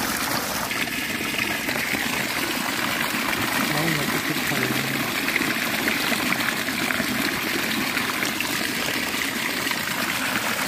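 Steady rush of water pouring over a bamboo-framed net fish trap.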